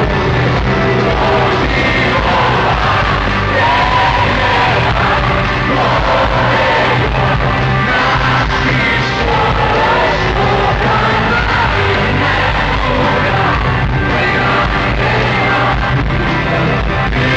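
Live rock band playing loud with a lead vocal, recorded from among the arena audience, with crowd yells and singing along close to the microphone.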